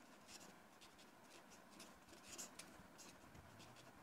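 Marker pen writing on a sheet of paper: faint, irregular scratching strokes.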